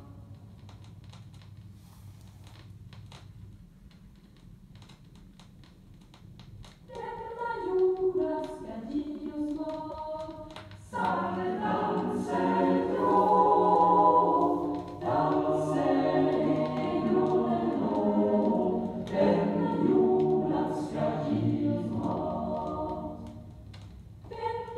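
Choir singing, played from a vinyl LP. The first few seconds hold only faint record surface noise with scattered clicks. The choir comes in about seven seconds in and gets fuller and louder about eleven seconds in.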